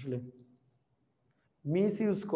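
A man's voice speaking, breaking off just after the start and starting again near the end, with a few faint short clicks in the pause between.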